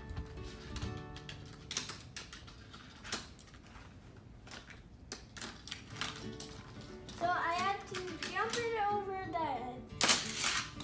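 Plastic clicks and clatter from a Hot Wheels Stunt and Go toy track and die-cast toy cars being handled and launched: a string of sharp, irregular clicks.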